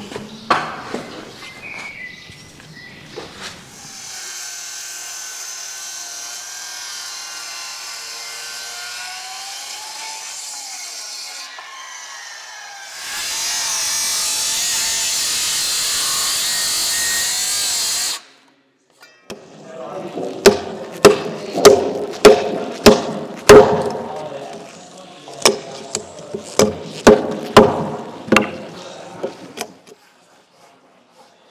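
Electric circular saw cutting into a timber beam. It runs steadily at first, then gets much louder as it cuts, and cuts off suddenly. After a short pause come a run of sharp, loud blows, about two a second, like a mallet driving a chisel into a mortise.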